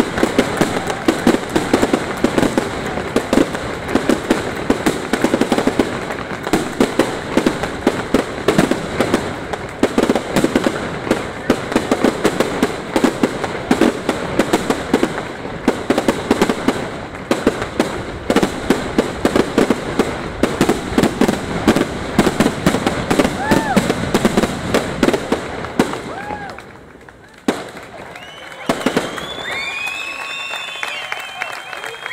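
Fireworks display: a dense, continuous run of crackling pops and bangs. It thins out briefly near the end, with a single loud bang in the lull, then picks up again.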